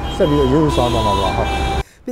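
A man speaking over the steady noise of passing road traffic. Both cut off abruptly shortly before the end.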